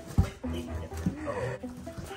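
Doberman pinscher puppies whimpering and whining, with background music underneath.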